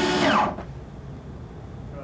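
Handheld power drill running against the side of a wooden bookcase, then stopping about half a second in, its pitch falling as the motor winds down.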